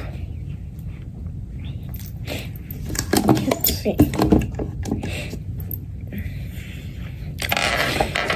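Small clicks and taps of items being handled and set down on a wooden desktop, over a steady low room hum, with a short rustle near the end.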